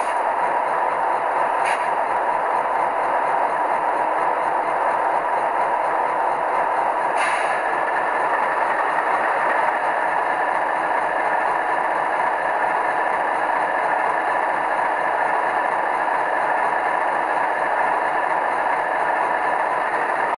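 Diesel locomotive sound, a steady, unbroken engine drone with train running noise, with two brief faint clicks about two and seven seconds in.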